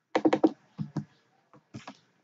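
Computer keyboard keys clicking: a quick run of about five keystrokes, then a few scattered single keystrokes.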